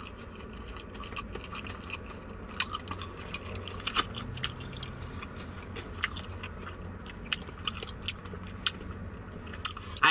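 A person chewing a mouthful of KFC Extra Crispy fried chicken, the crisp breading giving scattered short crunches, about one a second, between softer chewing.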